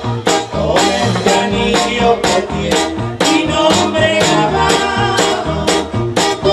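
Mexican música campirana band playing, with guitars over a steady beat of about two strokes a second.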